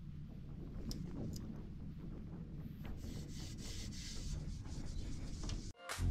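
Faint, steady rubbing of a microfiber towel over a motorcycle's engine side cover as it is wiped dry; it cuts off suddenly just before the end.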